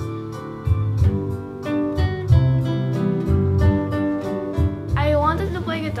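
Nylon-string classical guitar playing a slow piece: single plucked melody notes ringing over sustained bass notes. A child's voice begins speaking near the end.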